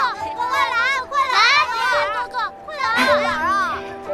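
Several children's high voices calling out excitedly in short bursts, over background music with long held notes.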